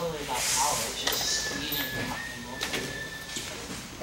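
Quiet male voices talking off-mic, softer than the main narration, with a faint steady high tone lasting about two seconds in the middle.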